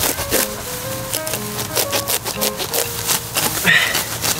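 Background music playing a simple stepping melody, over repeated crackling rustles of tall grass being gripped and torn up by hand.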